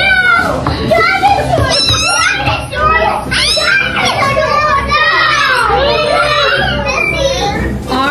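A roomful of toddlers chattering and calling out over one another, many high voices overlapping with no single one clear.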